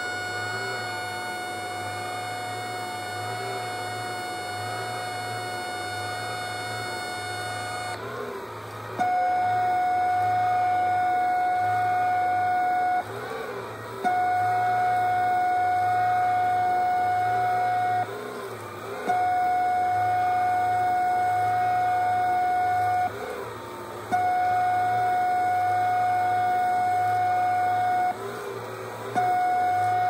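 RCA Radiomarine ET-8053 lifeboat transmitter sending the international radiotelegraph auto-alarm signal, heard through a radio receiver as a steady beep tone. The tone runs unbroken for about eight seconds, then is keyed in long dashes of about four seconds, each followed by a one-second gap. This is the signal that tripped the alarm on ships' radios.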